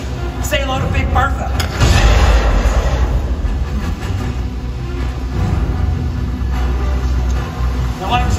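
Stunt-show special effects: a sudden loud bang about two seconds in opens a steady low rumble that lasts several seconds, while smoke and then a cascade of water are let off from a set tower. Brief shouted voices come just before the bang.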